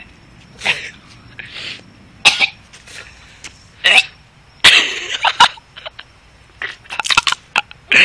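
A boy coughing hard in repeated fits, with sharp bursts coming in clusters, the strongest in the middle. He is choking on a mouthful of dry ground cinnamon.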